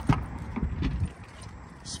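Rear door of a 2016 Toyota 4Runner pulled open by its outside handle: a sharp latch click right at the start, then a few lighter knocks and clinks as the door swings open.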